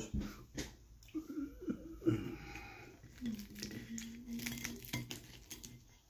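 Crispy KFC fried chicken crust crunching and crackling in a scatter of short, light crackles as it is broken up.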